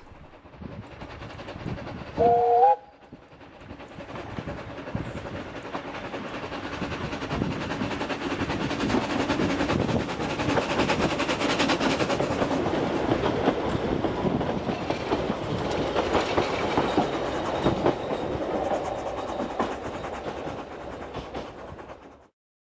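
A small narrow-gauge steam locomotive gives a short two-note whistle about two seconds in, then works past hauling its coaches. The exhaust and wheel noise swells as it approaches, holds, and dies away near the end.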